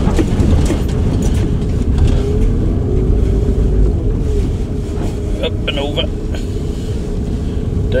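A van's engine and tyres rumbling steadily, heard from inside the cab while it drives slowly over a rough, potholed track.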